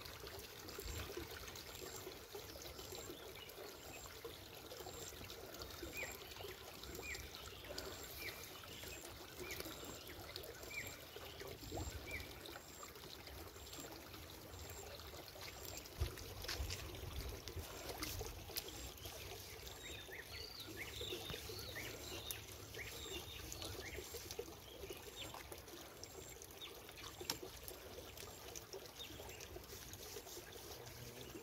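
Faint trickling of a shallow river, with a brief splash about halfway through. A short high chirp repeats about once a second, and later comes a cluster of chirps.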